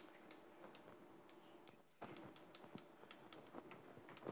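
Chalk writing on a blackboard: faint, quick taps and short scrapes as capital letters are written, about three to four strokes a second.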